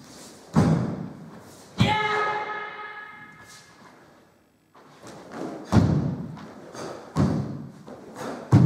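Sharp thuds of a karateka's techniques landing, one per block or kick: the cotton gi snapping and bare feet striking a wooden floor, ringing in a large hall. About two seconds in, on the fourth downward block, a kiai shout rings out and fades.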